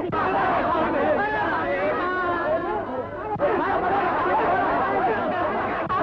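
A crowd of many people talking and shouting over one another at once, a dense steady babble of voices.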